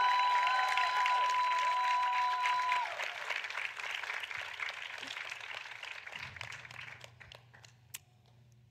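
Audience applauding, with a few high held tones over the clapping for the first three seconds. The clapping thins out and dies away near the end.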